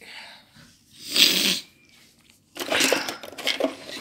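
A short breathy laugh about a second in, then rustling and clicking as cables, chargers and phones are pushed about in a cluttered drawer.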